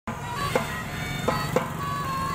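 School drum band playing: several pianicas (melodicas) hold a reedy melody in sustained notes, with drum strokes marking the beat.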